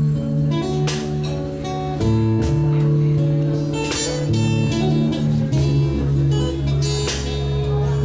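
Live acoustic band playing an instrumental passage: strummed acoustic guitar chords over sustained bass-guitar notes, with sharp percussion hits from a cajon.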